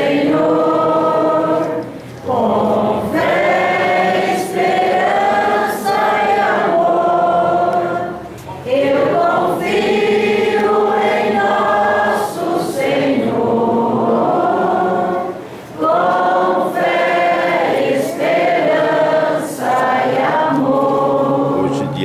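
A congregation singing a hymn together, many voices in long, held phrases with short pauses between them.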